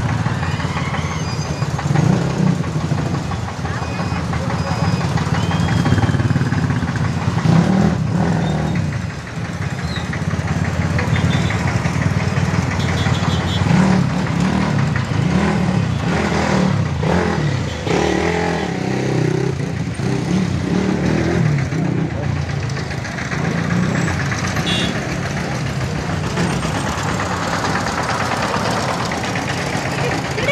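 Street traffic: engines of motorcycles and buses idling and moving off close by, a steady low drone.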